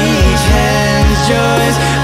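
Men's a cappella group singing in close harmony over a held bass note, with a few vocal-percussion kick beats.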